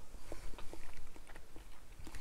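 A person chewing a mouthful of raw yellowfin tuna sashimi: soft, irregular wet mouth sounds with faint small clicks.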